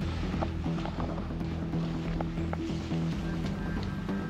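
Background music: a low melody moving note to note at a steady level.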